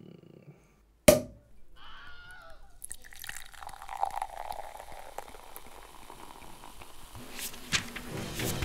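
A sharp pop about a second in, then liquid pouring steadily into a glass for several seconds, with a few small clinks near the end.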